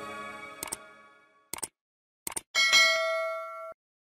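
Sound effects of a subscribe-button animation: the tail of the background music fades out, then three quick double mouse-clicks, then a notification bell chime that rings for about a second and cuts off suddenly.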